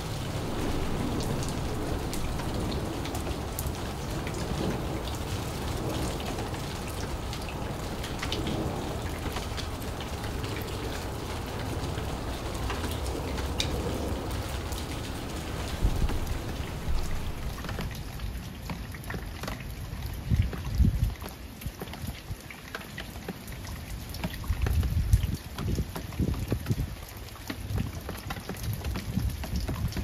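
Steady rain falling, a dense patter of drops. In the second half it thins and is broken by several low rumbling bursts, the loudest about 20 seconds in.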